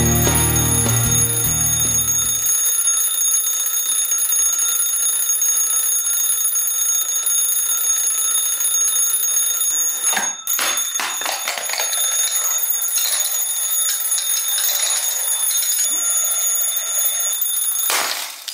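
Red twin-bell mechanical alarm clock ringing continuously with a steady, high metallic ring, briefly broken about ten seconds in.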